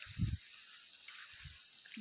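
Insects chirring steadily in a high pitch, with two short low thuds, the louder one just after the start and a softer one past the middle, likely footsteps through the grass.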